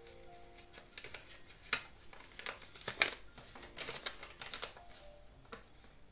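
Paper crinkling and rustling as a folded paper slip is opened by hand, with a run of sharp crackles, the loudest about a second and a half and three seconds in.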